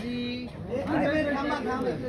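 Indistinct chatter of several voices talking at once, with one voice holding a drawn-out sound about the first half second: photographers calling out to the person they are shooting.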